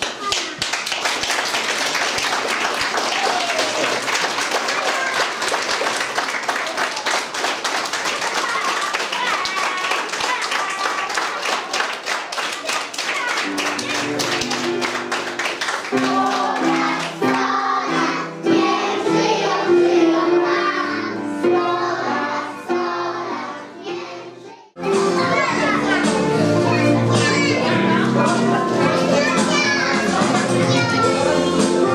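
Audience applause, dense and steady for about the first half, thinning out as music with a pitched melody comes in. Near the end the sound drops away and cuts, then the music starts again abruptly.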